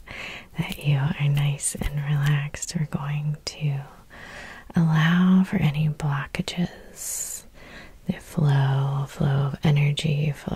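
A woman's soft-spoken, half-whispered voice talking in short phrases, with small clicks between them and a short hiss about seven seconds in.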